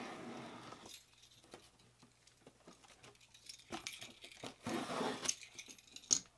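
A knife blade slicing through packing tape along a cardboard box seam, a scratchy rasp in the first second. After that come scattered small clicks and a few rustling scrapes of the cardboard box being handled.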